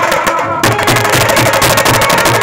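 Live band of drums playing a fast, dense rhythm for dancing, with low drum beats about four a second and a melody over them. The drumming grows busier and louder about half a second in.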